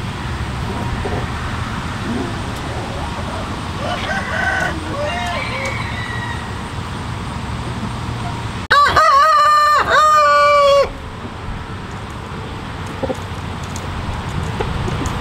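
A rooster crowing loudly close by: one crow of about two seconds, broken briefly in the middle, a little past halfway through. Fainter chicken calls come before it, over a steady low background noise.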